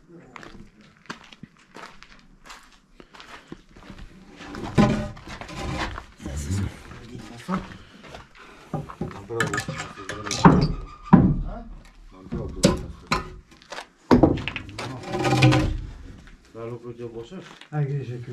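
Indistinct voices that the recogniser did not render as words, with scattered knocks and clicks in the first few seconds.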